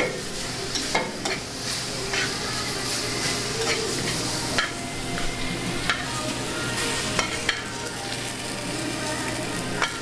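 Steady sizzle of food frying in hot pans, with sharp clicks of metal tongs against a sauté pan as wilted spinach is turned and lifted out.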